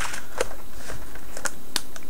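Cardboard phone packaging being handled and set down: a few light taps and clicks with faint rustling.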